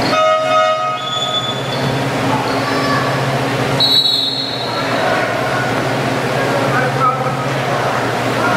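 Basketball gym scoreboard horn sounding a steady multi-tone blast for about a second and a half, then a short, high referee's whistle about four seconds in, over echoing gym chatter.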